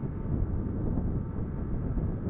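Honda CG 150 single-cylinder motorcycle being ridden at road speed, a steady low rumble of engine and road noise mixed with wind on the microphone.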